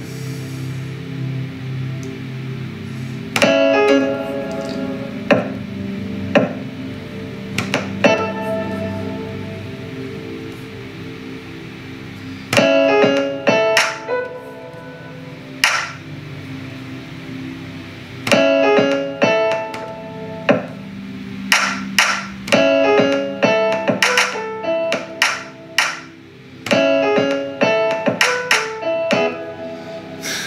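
Beat playback from a music production program: sampled grand piano chords sustain and loop while sharp programmed drum hits, kick and clap steps from a step sequencer, come in irregularly and grow denser in the second half as the pattern is built up. The beat has a trap feel.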